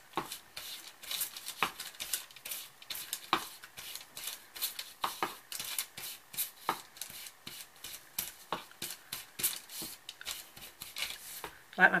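Ink blender tool's foam pad swiped over a sheet of paper on a cutting mat, inking it. It makes a steady run of short, soft scuffing strokes, about two or three a second.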